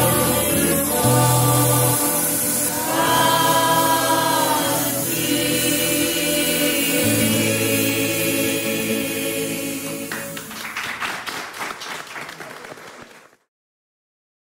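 Corfiot folk song sung by a polyphonic choir with orchestra, closing on long held chords that fade about ten seconds in. Brief applause follows and dies away, and the sound cuts off shortly before the end.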